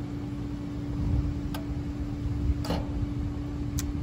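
Steady hum of the pool heater equipment running during an ignition attempt, with a couple of faint ticks, one about a second and a half in and one near the end.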